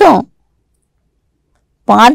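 A woman reading aloud in Telugu, with a silent pause of about a second and a half between phrases.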